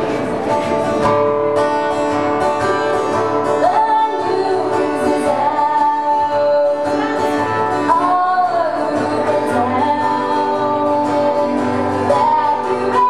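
A woman singing a song into a microphone over instrumental accompaniment, her voice gliding between held notes phrase by phrase.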